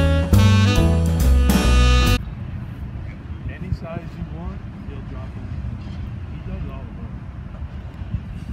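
Jazz music with saxophone cuts off about two seconds in. A steady low rumble of a freight train's cars rolling past follows.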